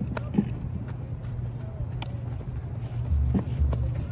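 A few sharp knocks of a softball being batted and fielded, spread out and irregular, over a steady low rumble.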